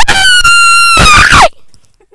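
A girl's loud, high-pitched squeal of laughter, held on one note for about a second and a half, then falling in pitch as it breaks off suddenly.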